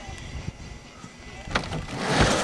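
Low, uneven rumble of wind on the microphone with a few light knocks. About one and a half seconds in, a sudden loud rushing hiss starts as the skier's skis begin sliding down the water ramp's in-run.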